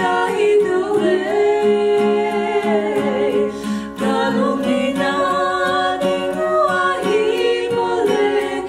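Two female voices singing a Kuki-language song with long held notes, accompanied by a strummed acoustic guitar.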